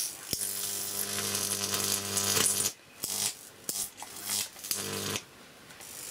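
High-voltage arc from a neon sign transformer buzzing and crackling as it strikes the tip of a neon mains-tester screwdriver, burning it. A steady mains buzz runs for about the first two and a half seconds, then breaks off and sputters in short bursts, with a brief buzz again near the end.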